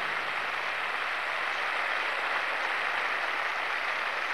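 A large audience applauding, a steady, even clapping.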